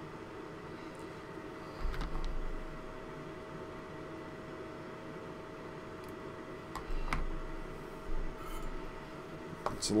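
Quiet handling sounds of hands moving wires and tools on a workbench: a couple of soft bumps, about two seconds in and again about seven seconds in, and a few small clicks. A steady faint electrical hum runs underneath.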